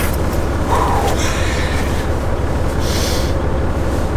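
Semi-truck diesel engine idling steadily, heard from inside the cab, with fabric rustling as a jacket is pulled off and a brief hiss about three seconds in.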